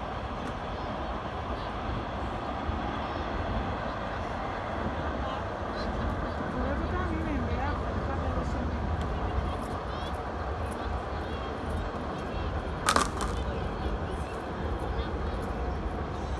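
Outdoor waterfront ambience: a steady low rumble and a dense bed of indistinct distant voices and city noise, with one sharp click that rings briefly late on.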